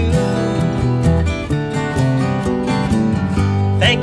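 Instrumental break of a live acoustic band: two Martin acoustic guitars strummed and picked over a Fender Jazz Bass line, with a shaker. A singing voice comes in near the end.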